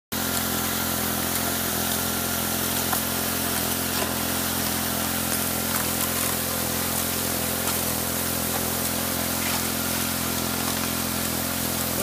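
Small engine-driven water pump running steadily, with water jetting from slotted PVC spray bars and splashing onto a gold sluice hopper.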